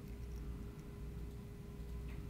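Quiet room tone: a steady low hum with a few faint small ticks.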